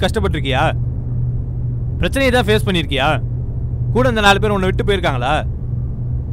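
A man speaking Tamil in three short phrases with pauses between, over a steady low hum.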